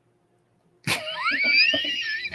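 Dead silence for most of the first second, a dropout in the stream audio. Then a man's voice breaks in with a high, rising-pitched "IPA".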